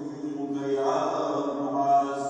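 A man's voice chanting melodically, holding long notes with slow pitch glides.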